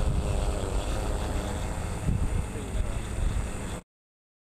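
Multirotor drone hovering low overhead, its rotors giving a steady noise with a faint high whine, mixed with rumbling wind buffeting on the microphone. The sound cuts off suddenly near the end.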